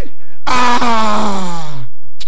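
A man's voice crying out in one long wail into a microphone. It begins about half a second in and falls steadily in pitch for over a second.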